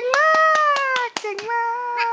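Hands clapping in quick succession, about five claps a second, under a long, high-pitched held voice cheering.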